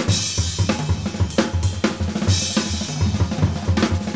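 Sonor drum kit played in a busy jazz drum passage: low drum strokes, snare hits and a steady wash of cymbals.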